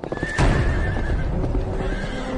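A horse galloping, its hooves thudding fast, with a horse's neigh over the top in the first second.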